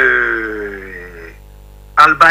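A man's voice drawing out one long syllable that falls slowly in pitch and fades out about a second and a half in, followed by a short pause.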